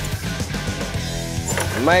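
Background music with steady low notes, and a man's voice beginning near the end.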